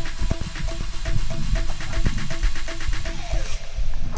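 Background electronic music with a steady, even beat; the highest sounds drop away near the end.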